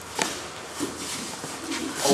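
Quiet room sound of a large hall, with a few short faint knocks.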